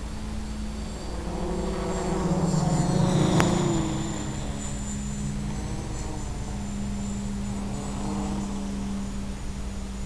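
Electric motor and propeller of an FPV model aircraft running with a steady hum, swelling louder and dropping in pitch about two to four seconds in, then settling back.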